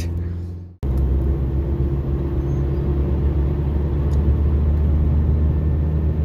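Steady low rumble of a Ford Fiesta driving along a road, heard from inside the cabin, with a brief dropout under a second in.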